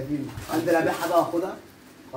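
A man's voice chanting a sing-song 'ya ya' with a wavering, warbling pitch, breaking off about a second and a half in.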